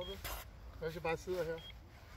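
Quiet, indistinct voices of people talking off-microphone in two short stretches, over a steady low rumble.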